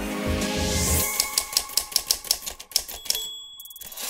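Closing music that stops about a second in, followed by a quick, even run of typewriter key strikes and a single high bell ding near the end.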